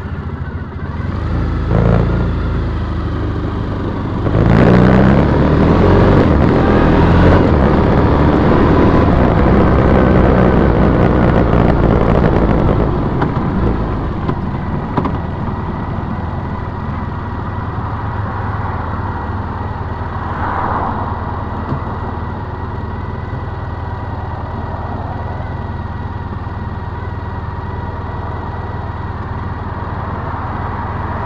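2010 Triumph Bonneville T100's parallel-twin engine pulling away and accelerating, its pitch rising about four seconds in. It is loudest for the first dozen or so seconds, then settles to a steadier, quieter cruise.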